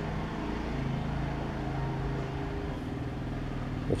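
A steady low machine hum. Its higher tone fades out about three seconds in, leaving a lower drone.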